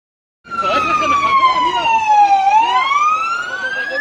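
Emergency vehicle siren wailing, starting suddenly about half a second in. Its pitch falls slowly for about two seconds, then rises again.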